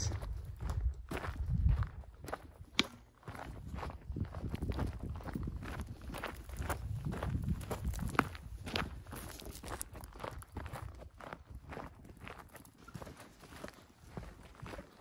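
Footsteps of a hiker in boots crunching along a rocky dirt trail at a steady walking pace.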